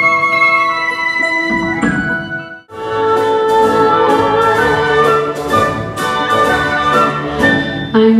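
Orchestra playing a held chord that breaks off abruptly about two and a half seconds in, then a fuller orchestral passage with strings and regular percussion strokes.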